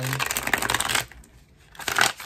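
A deck of tarot cards being riffle-shuffled: a rapid run of card flicks for about a second, then a shorter burst of flicks near the end.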